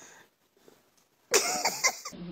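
A child coughs: a short, loud burst about a second and a half in, after a quiet stretch.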